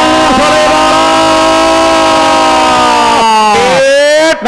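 A man's voice over a loudspeaker holding one long drawn-out call, steady in pitch for about three seconds, then sagging and dropping away near the end.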